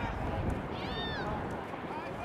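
A short high-pitched call, rising then falling in pitch, about a second in. It sits over a low wind rumble on the microphone.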